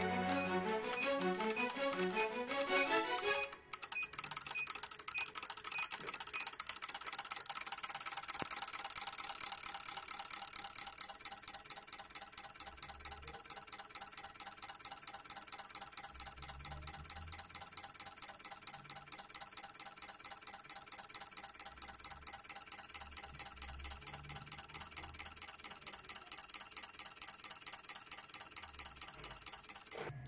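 Background music for the first few seconds, then rapid, regular clicking, about four clicks a second, from the ECU injector test bench as the engine computer pulses its injector circuit.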